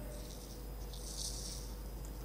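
Faint rustling, loudest in the first second and a half, over a steady low electrical hum.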